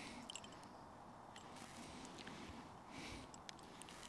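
Faint small clicks and brief scrapes of a knife worked against a ferrocerium rod, clearing gunk off before striking.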